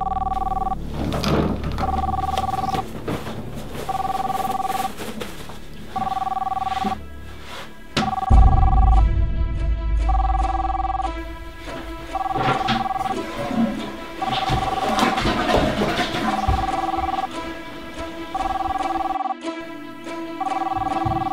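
A telephone ringing: a two-tone electronic ring in bursts of about a second, repeating every two seconds. About eight seconds in, music with heavy bass starts and carries on under the ringing.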